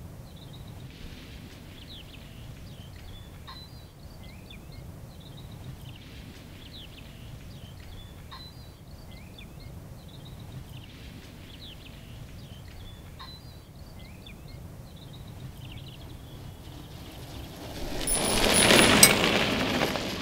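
Birds chirping in short calls over a steady low outdoor rumble. Near the end a louder rushing noise swells for about two seconds, as of something passing close.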